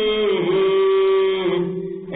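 A voice chanting a devotional poem (kalam), holding one long note that dips slightly in pitch, then fading out near the end at the close of the phrase.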